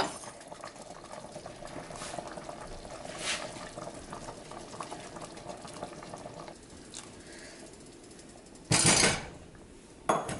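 Chicken soup bubbling at a simmer in a pot, with a few faint clinks of utensils. Near the end comes one brief, loud clatter of kitchenware as a spatula and a steel cup are worked over the pot.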